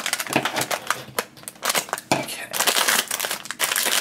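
Foil blind bag crinkling and crackling in uneven bursts as hands work it open.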